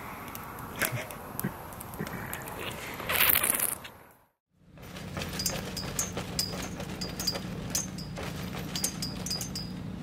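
Campfire crackling with scattered pops and a brief loud rush, then after a cut, light metallic clinks and rattles from a canvas cabin tent's frame being taken down, over a steady low hum.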